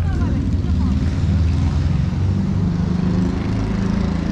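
A loud, steady low engine drone with a wavering hum.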